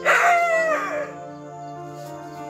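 A rooster crows once: a loud call of about a second at the start, ending in a falling pitch, over steady background music.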